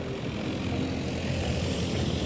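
Outdoor wind buffeting a phone's microphone as it is carried while walking: a steady, flickering low rumble with no clear pitch.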